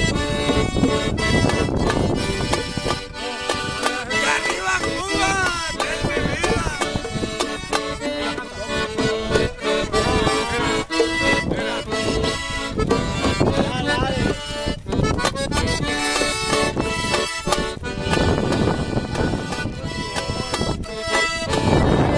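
Piano accordion playing a lively tune, with a pair of stand-mounted drums beaten by hand in a steady rhythm.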